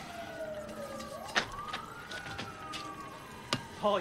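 Police siren wailing, its pitch rising and falling slowly in long sweeps, with a couple of sharp clicks.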